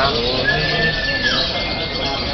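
Caged lovebirds chattering over a din of crowd voices. About half a second in, a single steady high tone holds for under a second and then drops away.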